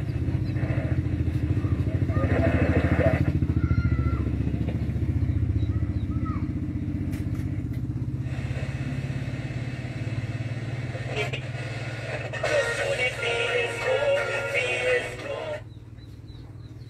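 Portable radio being tuned: a steady low hum with static, brief whistling glides and snatches of music and voices between stations. The level drops sharply just before the end.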